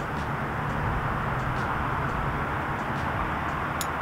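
Steady low hum of outdoor background noise with no distinct event, and a faint click near the end.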